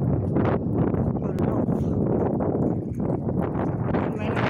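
Wind rumbling on a phone microphone, with irregular knocks and some voices.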